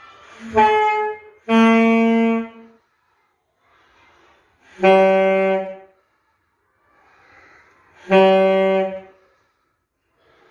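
A student saxophonist playing a slow exercise of long held notes: four notes of about a second each on nearly the same low pitch, the first one shorter, with breaths taken in the pauses between them.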